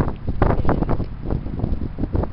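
Wind buffeting the camera's microphone in loud, uneven gusts.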